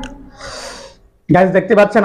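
A person's breathy gasp about half a second in, followed by a loud voice speaking from just past halfway.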